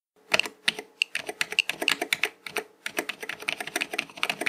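Keys on a wired computer keyboard pressed in quick succession, a dense run of clicks several a second. The single-board computer makes short noises as the keys are pressed, a sign that it is running and reading the keyboard even though it shows no video.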